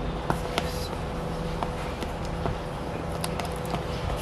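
Fingernail picking and scraping at the seal sticker on a cardboard product box, a handful of small scattered clicks, over a steady low hum.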